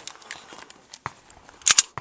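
Pistol being unloaded: a few sharp metallic clicks of its action, the loudest a quick pair near the end as the slide is worked.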